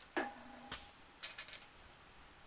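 Light clicks and taps of hand tools being handled and set down on a steel welding table, a few in quick succession about halfway through, with a brief low hum just after the start.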